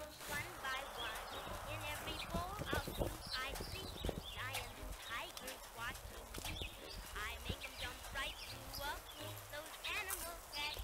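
City street ambience: small birds chirping in short, wavering calls over a low traffic rumble, with footsteps on the pavement.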